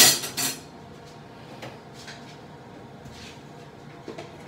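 Kitchenware clattering: two sharp clanks at the very start, the second about half a second in, then a few light clicks of dishes and utensils being handled.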